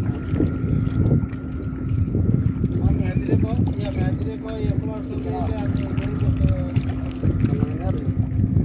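Wind rumbling on the microphone over sea water washing against the rocks of a breakwater, with a steady low hum underneath and faint talk in the background.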